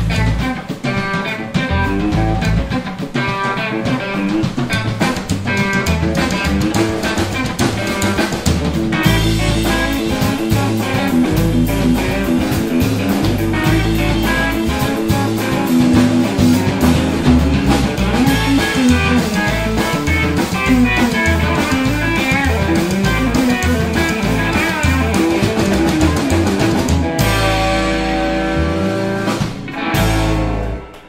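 Live band of Telecaster electric guitar, upright bass and drum kit playing a busy, driving number. Near the end it comes down to a held final chord and stops.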